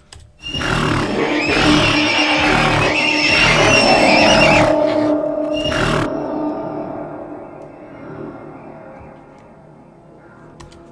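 Layered horse neigh, snort and huff samples played back together at staggered times through a shared effects bus. They sound for about five seconds, then a long tail fades away slowly.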